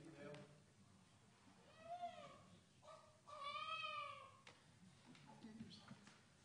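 Faint wails of an infant in the congregation: a short cry about two seconds in, then a longer one, each rising and then falling in pitch.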